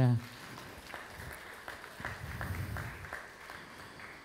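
A congregation applauding faintly, with scattered individual claps, in welcome of the baptism candidates.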